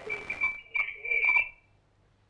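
A steady high-pitched whistle on a phone-in caller's telephone line, with faint, broken speech from the caller under it. It stops about a second and a half in.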